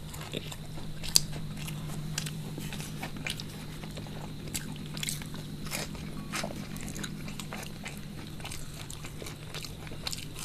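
Close-miked crunching and chewing of crispy deep-fried snacks, with irregular sharp crackles as pieces are bitten, the loudest about a second in. A steady low hum runs underneath.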